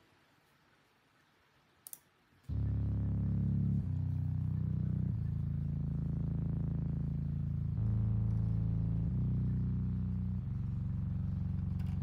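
Fuzzy Soul Organ patch from Logic Pro's Alchemy synth played solo: a single click, then about two and a half seconds in, a run of six sustained low organ chords, each held a second or more before the next.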